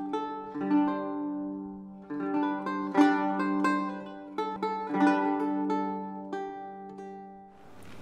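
Instrumental music on a plucked string instrument: single notes and chords struck every second or so and left to ring, fading out near the end.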